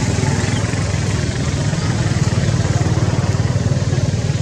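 An engine running steadily at idle, a low drone with a fast, even pulse.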